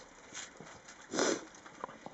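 Rhodesian ridgeback puppies moving over gravel and snow: light clicks and scuffs of paws, with a louder short rustle about a second in.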